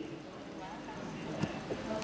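A pause in a man's speech: low room tone in a large hall, with faint voices and a small click about one and a half seconds in.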